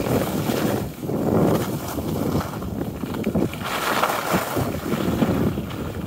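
Wind buffeting the microphone, mixed with the hiss and scrape of skis sliding over groomed snow on a downhill run, swelling and easing with the turns.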